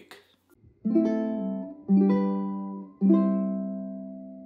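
Ukulele strummed: three chords about a second apart, each struck and left to ring, the last one fading out slowly.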